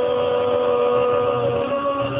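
A long held vocal 'ohh' on one steady pitch, stepping up a little near the end, over crowd noise, as a man drinks from a bottle on a count.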